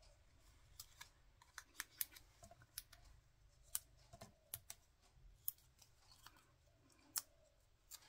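Faint handling of paper and card pieces: small, irregular clicks and light rustles, a dozen or more spread through, the sharpest a second or two apart.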